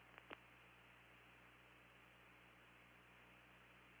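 Near silence: a faint steady hiss and low hum, with two brief clicks just after the start.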